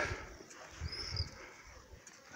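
A single short high-pitched animal call about a second in, rising and falling in pitch, over faint outdoor background noise.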